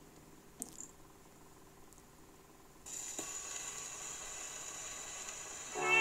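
Steel needle of an acoustic gramophone's soundbox set down on a spinning 78 rpm record. A faint click comes as the soundbox is handled, then from about three seconds in a steady hiss of surface noise runs in the lead-in groove. The music, with violin, begins right at the end.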